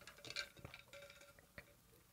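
Near silence with a few faint small clicks and taps, a person taking a drink.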